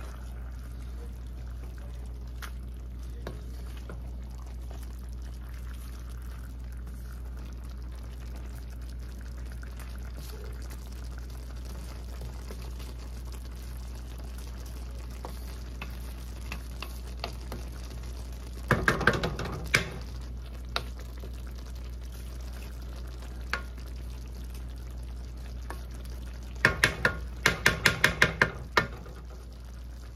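Wooden spoon stirring and scraping a simmering coconut-milk fish stew in an aluminium wok, over a steady low hum. A cluster of scrapes comes about two-thirds of the way through, and near the end a quick run of about ten sharp taps, the spoon knocked against the pan.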